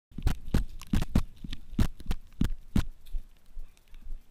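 Airsoft gun shots: about nine sharp cracks at roughly three a second, irregularly spaced, stopping about three seconds in.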